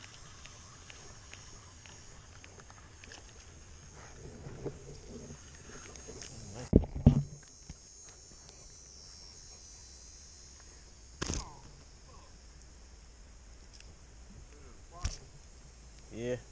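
A faint, steady insect buzz, with a cluster of loud thumps about seven seconds in as a small fish is swung up and landed on the bank. Two short, sharp knocks come later.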